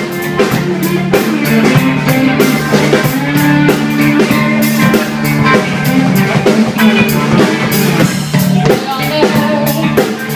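Live rock band playing: electric guitar, bass guitar and drum kit with a steady beat.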